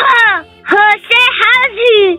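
A voice chanting Hindi alphabet syllables in a drawn-out sing-song, three phrases with the pitch sliding down on each.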